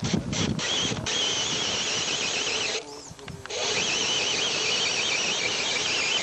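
Radio-controlled rock crawler's electric motor and gears whining, the pitch wavering as the throttle is worked. It stops for about a second halfway through, then starts again.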